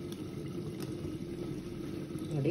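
A steady machine hum in a kitchen with a couple of faint light clicks, as a wire mesh skimmer lifts boiled rice from a pot of starchy water.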